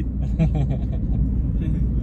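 Steady low rumble of a car's road and engine noise heard inside the cabin, with quieter voices and laughter briefly in the first second.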